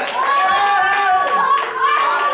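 Congregation clapping their hands, with a voice over it in long, high-pitched held cries.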